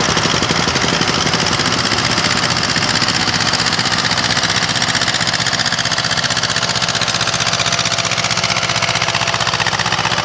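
Tractor diesel engine running steadily with a fast, even chugging.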